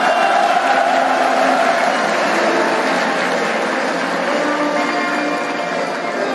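Audience applauding steadily, with music playing faintly underneath.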